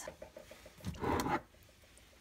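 Canned diced tomatoes sliding out of a tipped can and landing in the broth in a slow cooker: one short wet plop about a second in.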